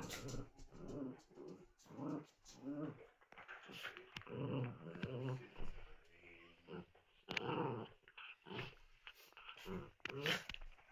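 Two small dogs play-fighting, growling in short repeated bursts about once a second, with a brief lull a little past the middle.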